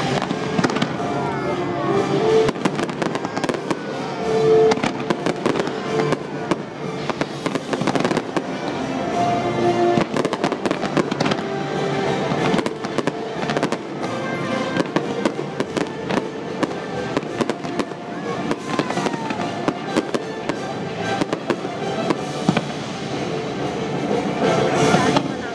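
Fireworks bursting and crackling in quick, dense succession over orchestral show music.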